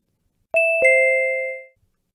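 Two-note descending ding-dong chime, both notes struck about a third of a second apart and ringing out for about a second. It cues the start of the recorded native-speaker pronunciation.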